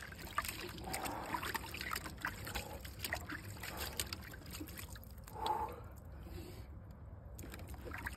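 Ice water in a clawfoot bathtub trickling and lightly splashing as a person sitting in it shifts and moves their arms, with many small drips and ticks of water.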